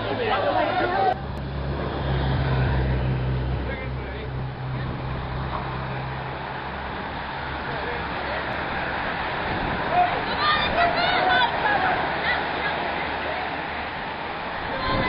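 Outdoor bike race sound: a motor vehicle's engine hums steadily for the first several seconds. Then a bunch of racing road cyclists passes with a rushing of tyres and wheels, and a few short shouts come about two-thirds of the way in.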